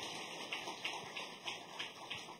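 Audience applauding, fairly quiet, with individual hand claps standing out from the patter.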